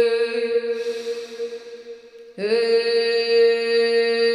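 A woman's voice chanting one long held tone. It breaks off a little under a second in for about a second and a half, then comes back in with a short upward slide into the same steady note.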